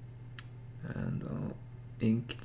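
A single sharp click, then a brief murmured sound of a voice, over a steady low hum.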